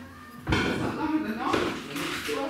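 A single thump about half a second in, after a brief lull, followed by indistinct talking.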